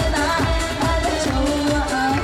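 Upbeat Korean trot song performed live: a woman sings into a handheld microphone over a band with a steady beat, and a long note is held through the second half.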